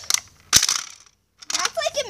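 A single sharp crack from a plastic Nerf Longstrike blaster bending under a person's weight, about halfway in, with quieter clicks and creaks of the plastic around it.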